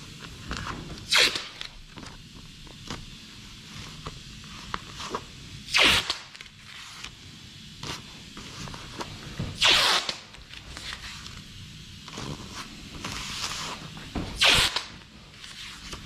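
Paper masking tape being pulled off the roll in four short rasping strips, a few seconds apart, with crinkling of masking paper and small handling noises between them.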